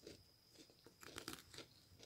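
Faint eating sounds: a metal spoon digging into a mug cake in a ceramic mug, giving a few soft crunches and clicks about a second in.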